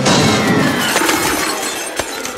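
Cartoon crash sound effect as a heavy body falls into a wooden sawhorse and sends metal paint cans flying: a loud breaking, clattering crash at the start that thins out over about two seconds.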